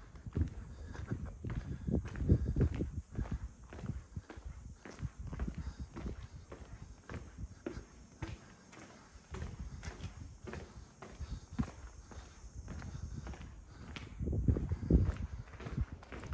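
Footsteps on stone paving and cobbles at a steady walking pace, each step a short, hard strike. They are louder for a moment near the end.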